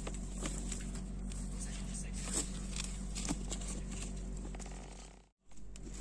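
Steady low background hum with faint scattered clicks and rustles; the sound cuts out completely for a moment near the end.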